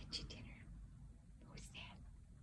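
Soft, faint whispering from a person: two short breathy phrases, one at the start and one about one and a half seconds in.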